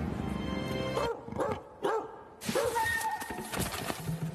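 Three or four short cat snarls, each rising and falling in pitch, in the gap after the music stops about a second in; music returns about halfway through.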